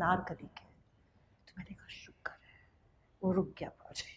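Quiet, broken-up speech: a few short spoken syllables near the start and again near the end, with faint whispered sounds in between.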